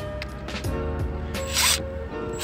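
Background music plays throughout. About one and a half seconds in, a Milwaukee cordless drill spins a battery-terminal nut through a 10 mm socket in one short burst.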